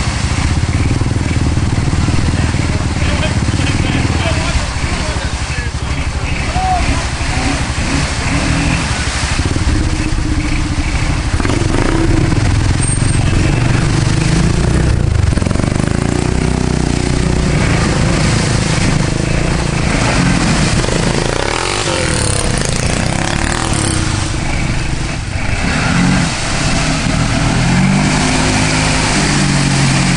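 Suzuki ATV engine revving under load as the quad churns, bogged in a deep mud hole, its pitch rising and falling in repeated revs near the end, with churning water and mud.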